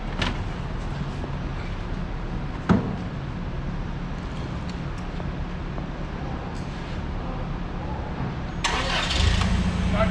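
A single sharp thump about a quarter of the way in. Near the end the Toyota 7FGU25 forklift's gasoline four-cylinder engine cranks and catches at once, then runs steadily, starting readily.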